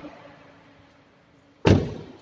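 A 2007 Ford Everest's side door slammed shut, one heavy thud about one and a half seconds in.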